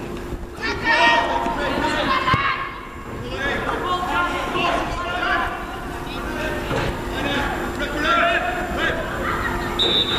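Voices calling out across an open football pitch during play, over a steady low rumble, with one sharp knock a little over two seconds in.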